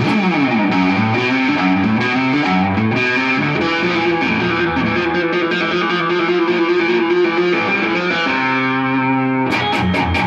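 Yamaha Revstar RS320 electric guitar played through an amp on overdrive. A lead line opens with a slide down and back up the neck, then holds long sustained notes, and breaks into quick picked chord strokes near the end.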